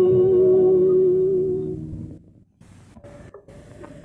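A woman's singing voice holding one long steady note at the close of a film song, with soft instrumental accompaniment beneath, fading out about two seconds in. After that only a faint hiss with light crackle from the old soundtrack remains.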